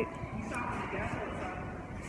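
Steady background noise of a busy supermarket, with faint murmuring voices in it.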